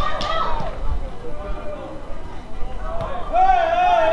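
Shouting voices on the football pitch. Near the end comes one long, high-pitched shout that rises and falls.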